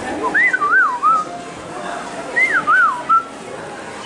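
Two short phrases of whistled, swooping up-and-down glides, in the style of R2-D2's beeps.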